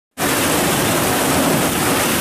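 Heavy rain pouring down, a dense, steady hiss.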